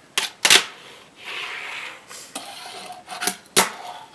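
Toy skateboard, a plastic handboard, clacking against a wooden tabletop during ollie attempts: two sharp clacks near the start and two more about three and a half seconds in, with a soft hiss in between.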